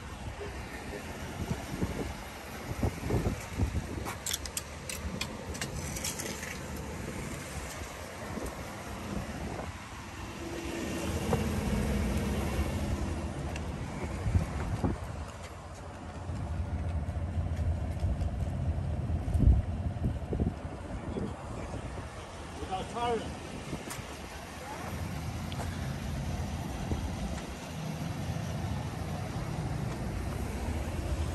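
Motor-vehicle rumble that swells twice and fades, with a few light knocks about four to six seconds in and faint, indistinct voices.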